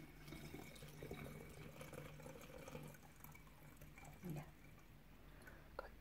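Faint trickling and dripping of brandy poured through a funnel into a flip-top glass bottle.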